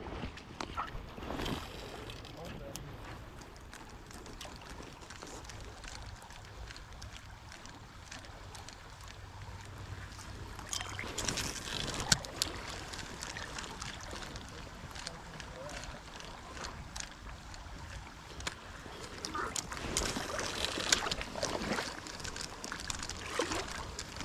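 Spinning rod and reel being cast and reeled in over wind on the microphone and moving creek water, with light clicks and handling noise from the reel and one sharper click about 12 seconds in.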